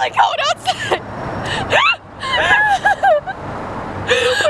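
Two young women laughing and exclaiming, with their voices gliding up high, over a low, steady hum of vehicles.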